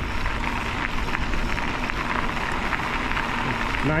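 Wind buffeting the microphone while bike tyres roll over a gravel trail on a descent, with a steady low rumble and many small ticks.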